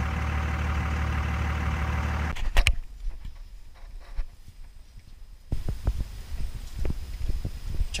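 Car engine idling, heard from inside the cabin as a steady low hum. The hum cuts off about two and a half seconds in with a couple of sharp clicks. Quieter outdoor sound follows, with scattered light knocks and thumps.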